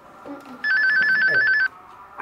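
Telephone ringing with a rapid electronic warble. One ring of about a second starts just over half a second in.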